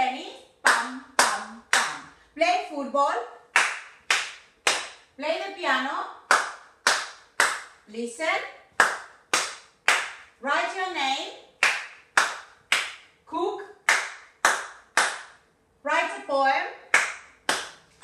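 Hands clapping in sets of three, about two claps a second, each set following a short spoken word.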